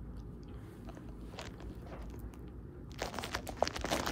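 A cat making crunchy, crackling noises at a corrugated cardboard catnip scratcher and the loose catnip around it. After a few faint ticks, a quick run of them starts about three seconds in.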